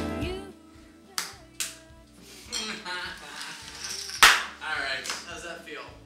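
Background music fades out, then a few sharp clacks sound on a poker table: two about a second in and a louder one about four seconds in. Low, indistinct men's voices come from around the table.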